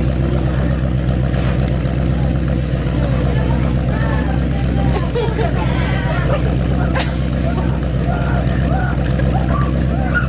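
A car engine running steadily at an even pace, with no revving. Faint talk from people around it lies underneath.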